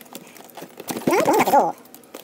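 A knife blade scraping and clicking lightly on the packing tape of a cardboard box. About a second in comes a short, wavering, voice-like pitched sound lasting under a second, louder than the cutting.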